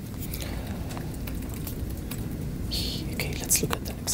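Room noise: a steady low hum with scattered faint clicks, soft whispering or murmur, and a short hiss about three seconds in.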